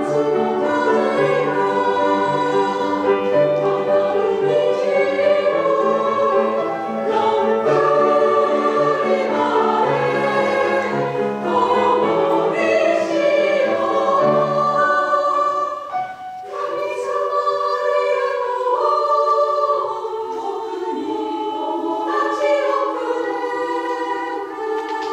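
Women's choir singing in Japanese with piano accompaniment. The low piano notes keep a steady pattern until a brief dip about two-thirds of the way in, after which the voices carry on over a lighter accompaniment without the bass.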